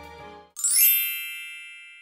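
A bright chime sound effect: a single ding with a short glittering shimmer, struck about half a second in and ringing down slowly as it fades out. Before it, soft background music fades away.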